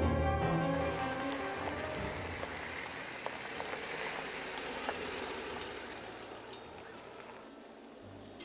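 Music ends about a second in. A pickup truck then rolls along a gravel road: a hiss of tyres on gravel with small scattered clicks, fading steadily as it moves away.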